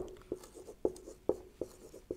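Whiteboard marker writing on a whiteboard: a quick series of short, sharp taps and squeaks, about six strokes in two seconds.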